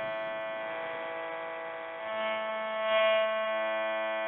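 A steady hum of several held tones, swelling slightly about two and three seconds in.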